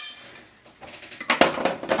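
Serving utensil scraping against a glass mixing bowl as muesli is portioned onto a plate. The first half is quiet, then a few loud clattering knocks and clinks come about a second and a half in.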